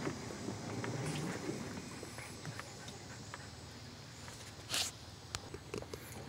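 Electric Polaris utility vehicle rolling over a sandy dirt track with no engine sound, only tyre crunch and small rattles, fading gradually as it slows. A short burst of noise comes about five seconds in.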